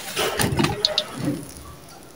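Hands scooping dry, gritty sand-cement mix from a steel bowl, the grains scraping and rustling against the metal, with a couple of sharp ticks just before a second in. The rustle dies down toward the end as the handful is lifted.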